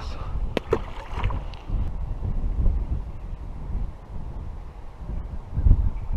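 Wind buffeting the action camera's microphone: a low, uneven rumble, with a few sharp clicks about half a second to a second in.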